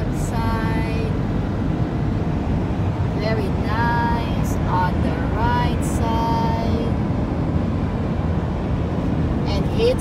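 Road and engine noise inside a car cabin at highway speed: a steady low rumble, with a high-pitched voice heard a few times over it.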